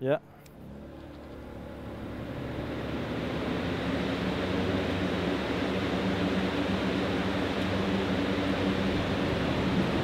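A ring of about twelve electric box fans switched on together around a kerosene fire. Their rush of air and motor hum build over the first three or four seconds into a steady, loud whoosh.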